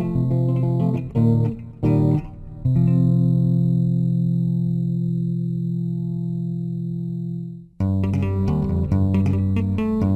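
Solo bass guitar: a few quick plucked notes, then one low note left ringing and slowly fading for about five seconds. The note is cut off sharply near the end and quick notes start again.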